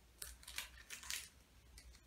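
Scissors snipping through the foil of a trading-card booster pack to re-cut a badly cut top: three or four short, crisp snips in quick succession, then a pause.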